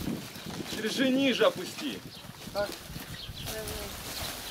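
Short bits of talk and calls, a high-pitched voice among them, over the dry rustle and clatter of stripped tree-bark strips being handled and piled onto a cart.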